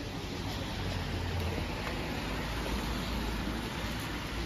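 Street ambience: a steady hiss of car tyres on a wet road, with a low traffic rumble that builds slightly toward the end.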